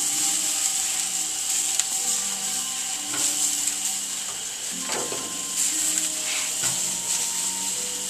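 Hamburger patties and hot dogs sizzling on a grill over an open fire, a steady hiss with a few faint clicks.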